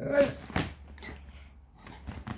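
A large dog giving one short vocal sound right at the start, followed about half a second in by a single knock, then quieter rustling.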